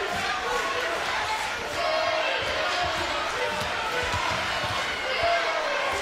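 Crowd chatter in a basketball arena, with a basketball being dribbled on the court: scattered low thumps.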